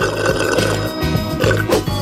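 Background music with a sip drawn through a plastic drinking straw.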